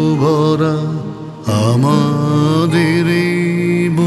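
Opening music of a Bengali patriotic song: a steady low drone under a melody line that bends and wavers in pitch. The sound drops briefly a little over a second in, then comes back.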